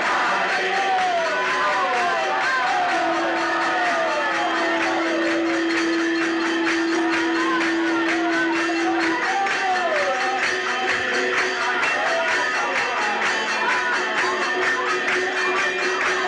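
Devotional kirtan: a group of voices singing and calling out over a fast, steady beat of hand cymbals (karatalas). A single note is held steadily for about six seconds in the first half.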